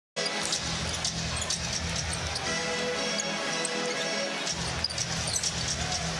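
Basketball game audio that cuts in just after the start: a ball bouncing on the hardwood with sharp shoe squeaks, over arena music and crowd noise.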